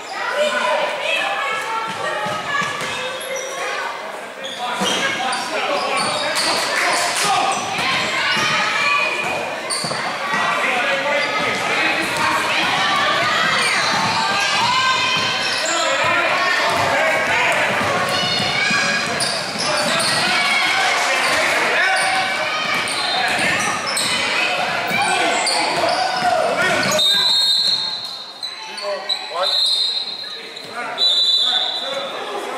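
Youth basketball game in a large gym: a basketball bouncing on the hardwood court under many overlapping voices of players and spectators calling out. A high, steady tone comes in near the end.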